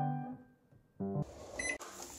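Piano notes ring out and die away into a short lull, and a brief low chord sounds about a second in. Then comes an abrupt change to a steady background hiss with a short high electronic beep from a Zojirushi rice cooker near the end.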